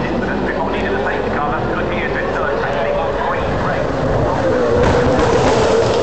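Spectators chattering, with a race car engine growing louder in the last second or so as it comes closer.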